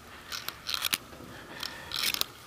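Short bursts of clinking and rattling from a harnessed Saddlebred's tack as the horse stands hitched to a jog cart: a few quick clusters about a third of a second in, just before the one-second mark, and again near the end.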